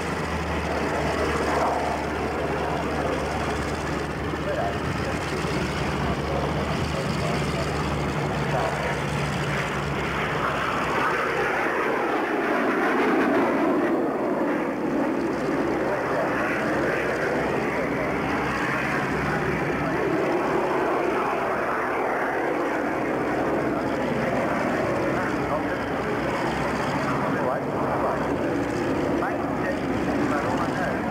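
Boeing Stearman biplanes' radial engines and propellers running as the aircraft taxi, with a steady low engine hum at first. About twelve seconds in, the sound grows louder and broader as engine power comes up.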